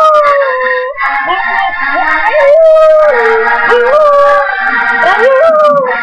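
Husky howling along to a song: about five drawn-out howls, each rising in pitch and then sliding back down.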